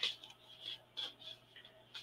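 A few faint, short clicks and light knocks, spaced irregularly.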